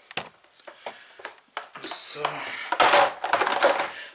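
Kitchen bowls and dishes being handled: a few light clicks and knocks, then a louder, longer clatter in the last second or so.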